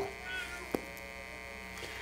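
Steady electrical mains hum from a sound system in a pause between speech, with a faint brief high-pitched sound shortly after the start and a single click about three quarters of a second in.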